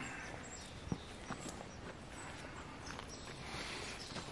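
Faint footsteps on dry pine straw, with a few light clicks, over a quiet outdoor background.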